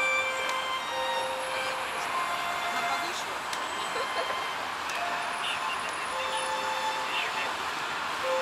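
Traffic noise from a busy multi-lane road: a steady hiss of passing cars and minibuses. Soft sustained notes of background violin music run under it.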